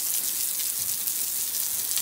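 A jet of water spraying onto wet concrete paving slabs, a steady hiss.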